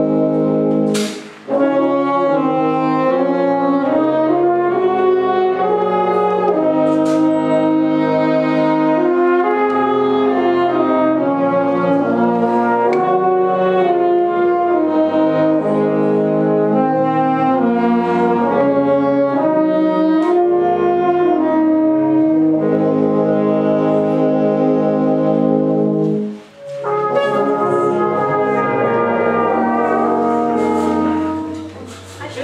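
A wind band playing slow, sustained chords. It breaks off briefly about a second in and again near the end, then starts playing again.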